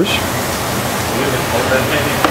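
Steady, even rushing background noise of a commercial kitchen's ventilation.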